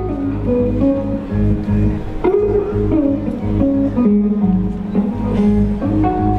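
Live blues on amplified electric guitar: a picked, melodic instrumental passage over a steady low drum beat from a one-man kit.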